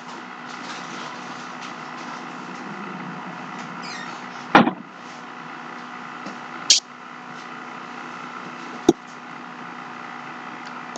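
Steady room hum with a few sharp knocks and clatters, the loudest about four and a half seconds in, then two lighter ones near seven and nine seconds.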